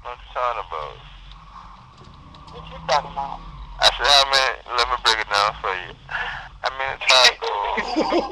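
Indistinct speech: a voice talking in short phrases, with pauses in the first few seconds and steadier talk from about halfway on, thin in tone like a voice coming over a chat or phone line.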